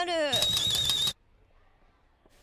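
A woman's voice ends a word, then a short edited sound effect follows: a burst of noise with a high, wavering whistle-like tone, lasting under a second and cutting off abruptly. Near silence follows.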